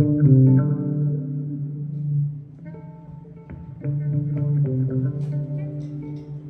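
Solo electric bass (a Mayones Cali4 mini bass) played through a multi-effects pedal: higher plucked notes ring over a sustained low note. The playing thins out about two and a half seconds in and picks up again a little before four seconds.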